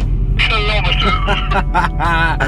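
Laughter and talk, some of it over a handheld walkie-talkie, above a low steady hum from the car.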